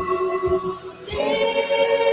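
Gospel song playing, with voices singing long held notes over a steady beat. About a second in, the voices drop away briefly and come back on a new held chord.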